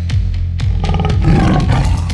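A tiger's roar, a sound effect, rising out of steady background music with a driving low beat about a second in.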